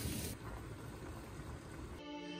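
Low, steady background noise with no distinct event; a high hiss in it drops away about a third of a second in.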